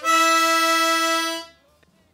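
Diatonic blues harmonica playing one held tongue-blocked octave: mouth over four holes with the tongue covering the middle two, so the outer two holes sound together an octave apart. The note holds steady at one pitch and stops about a second and a half in.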